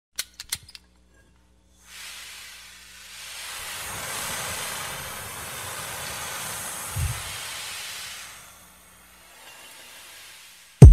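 Small hexacopter heard through its onboard camera: a few light clicks, then a steady rushing hiss of propeller wash and wind as it lifts off and flies, with one low thump about seven seconds in. The hiss fades away near the end.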